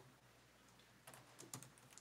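Near-silent room tone with a few faint clicks in the second half, typing on a laptop keyboard.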